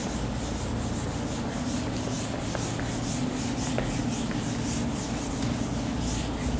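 Whiteboard duster wiping marker writing off a whiteboard, rubbed back and forth in quick, even strokes, about three a second.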